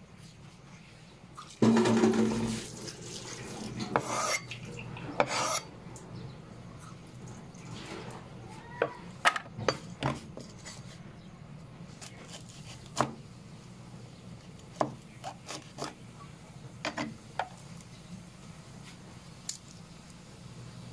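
A cleaver working on a plastic cutting board while garlic is crushed and peeled: a loud hit of the blade about two seconds in, two scraping rubs around four and five seconds, then scattered light knocks and clicks.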